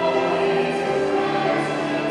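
Choir singing a slow piece during the Mass, holding long chords that change every second or so.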